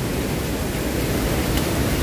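Steady rushing noise of monsoon stream water flowing over rocks.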